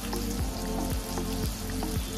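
Tomatoes frying in hot oil in a large aluminium kadai, sizzling steadily, under background music with a regular beat.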